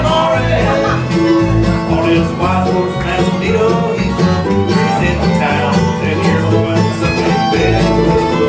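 Bluegrass band playing an instrumental passage on acoustic guitar, mandolin, fiddle and upright bass, with the bass notes keeping a steady beat under the melody.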